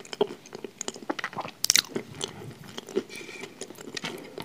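Close-miked chewing: irregular wet mouth clicks and soft crunches as a person eats dessert, with one louder crackling burst a little under two seconds in.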